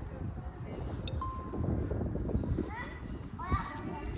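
Indistinct background voices of people and children, with no single clear speaker, and a few short high rising calls near the end.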